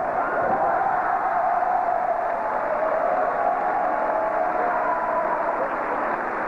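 Large arena crowd cheering and shouting continuously, with many voices holding drawn-out calls that waver in pitch.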